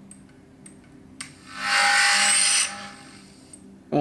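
DJI FPV drone's motors making their power-on startup sound: a loud, aggressive-sounding drill-like whir, with a steady tone in it, that starts about a second and a half in, lasts about a second and dies away. A few faint clicks come before it.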